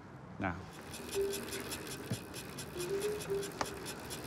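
Hands patting down a person's clothing, in quick repeated light pats with the rustle of fabric, searching for hidden pineapple.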